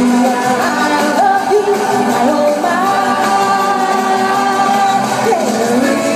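A woman singing a pop song into a microphone, holding a long note from about three seconds in and sliding down in pitch near the end.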